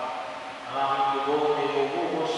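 A priest's voice chanting a liturgical prayer in a sung monotone through a microphone: a short pause early, then one long held line.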